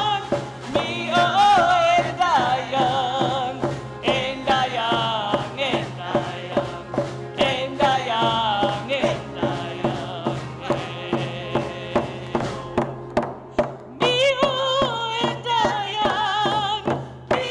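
Anishinaabe (Ojibwe) women's hand drum song: several women singing together in full voice with a wavering vibrato over a steady, even beat on single-headed hand drums struck with beaters. The voices soften briefly about three-quarters of the way through, then come back fuller.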